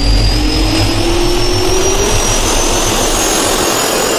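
Jet-engine turbine spool-up sound effect: a loud roaring rush over a low rumble, with a whine that rises steadily in pitch throughout.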